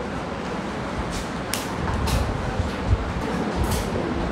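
Felt-tip marker strokes on a whiteboard: a few short scratchy strokes as a line and a label are drawn, with a dull thump near the three-second mark, over a steady low rumble of background noise.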